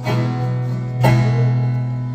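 Acoustic guitar strummed: two chords about a second apart, each left to ring and fade.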